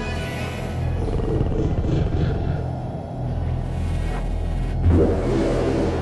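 Sci-fi flying-saucer sound effect: a low, steady hum and rumble under eerie music, swelling about five seconds in.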